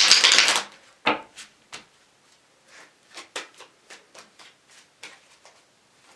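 A deck of tarot cards shuffled by hand: a dense, fast rush of card flicks in the first half-second, then scattered light clicks and taps as the cards are handled.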